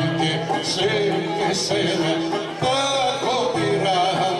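Live Greek folk music for the kagkelari circle dance: a violin-led band with a sung verse, playing continuously over a steady low accompaniment.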